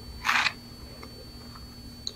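A single short paper rustle about a quarter second in, as a page of a Bible is turned. After it the room is quiet, with a faint steady hum and a thin, faint high tone.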